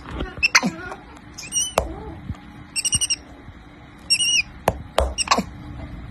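Capuchin monkey giving short, high chirping calls, three alike about a second and a half apart, mixed with quicker squeaks that drop in pitch.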